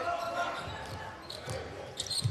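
Basketball being dribbled on a hardwood court, a few bounces about halfway through, over the background of an indoor arena.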